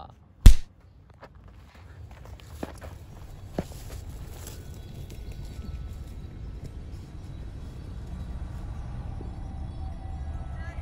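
A single sudden loud thump about half a second in, then wind rumbling on the microphone with scattered light knocks and rustles.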